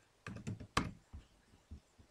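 Typing on a computer keyboard: about six separate, fairly faint key clicks, the loudest a little under a second in.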